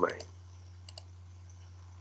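A computer mouse clicking twice in quick succession about a second in, over a steady low hum.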